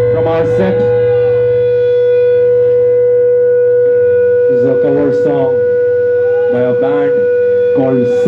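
Amplified feedback from the stage rig: one loud steady high tone held throughout, over a low drone that fades out about halfway. Bending, wavering notes are played over it about halfway in and again near the end.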